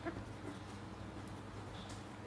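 Ballpoint pen writing on paper, faint over a steady low room hum. A brief high pitched squeak comes right at the start, and a short high note comes near the end.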